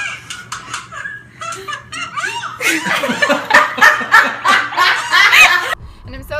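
Women laughing: light giggles at first, then about two and a half seconds in, loud, hard laughter for about three seconds that cuts off abruptly.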